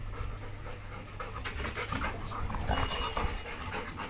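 Yellow Labrador retriever panting steadily with its mouth open, over a low steady rumble.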